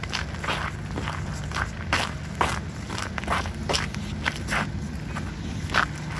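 Footsteps crunching on packed snow and ice at a steady walking pace, about two steps a second, over a low steady hum.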